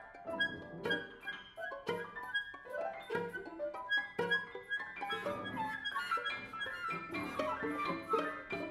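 Contemporary chamber ensemble music: a dense, choppy run of short note attacks with pitched instrumental lines over them.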